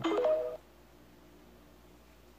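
TikTok video end-card jingle: a brief run of electronic beeps stepping up in pitch, over in about half a second.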